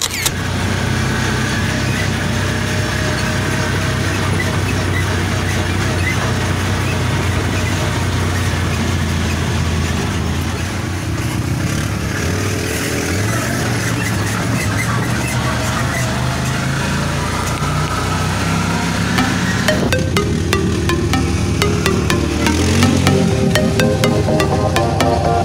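Off-road side-by-side buggy engine running as it drives along a dirt trail, its pitch rising and falling with the throttle. About 20 seconds in, music with a steady beat takes over.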